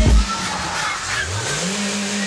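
Car engine revving, its pitch rising about halfway through and then holding steady.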